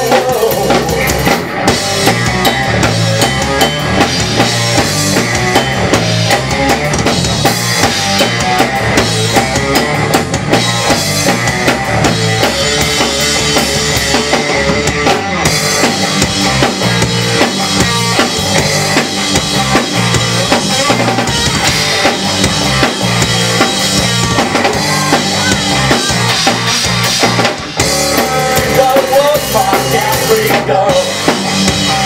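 Drum kit played with a rock band through an instrumental stretch of a blues-rock song: a steady kick drum, snare backbeat and cymbals, loud and even.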